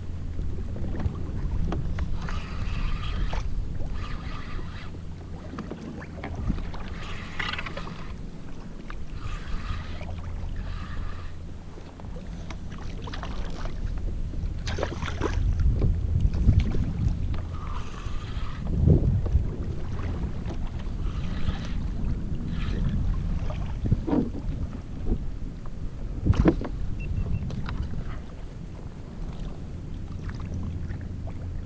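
Wind buffeting the microphone over water splashing against a kayak's hull, with a few sharp knocks in the second half.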